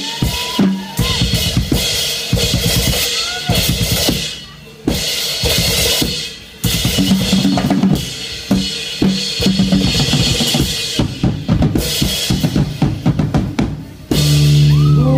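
Drum kit played live and hard: fast snare, bass drum and cymbal hits, with two short lulls about four and a half and six and a half seconds in.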